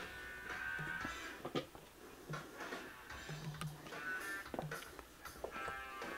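Electric basses being lifted off their stands and handled, with short knocks and clicks of wood and hardware and the unplugged strings faintly ringing.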